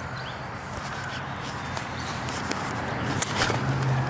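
Handling and rustling noise as a hand-held camera is turned around, growing louder, with a few sharp clicks about three and a half seconds in, over a steady rush of creek water.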